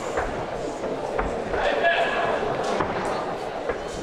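Fight-arena ambience: crowd murmur and distant shouted voices echoing in a large hall, with a few sharp thuds.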